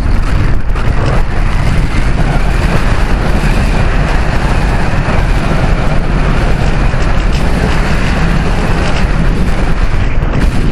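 Loud, steady rush of airflow buffeting the microphone of a camera mounted on a gliding RC sailplane in flight, heaviest in the low rumble, with no motor running.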